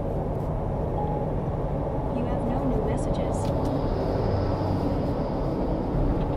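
Steady road and engine noise inside the cabin of a Ford Ranger Bi-Turbo pickup, with its 2.0-litre twin-turbo four-cylinder diesel, cruising at expressway speed.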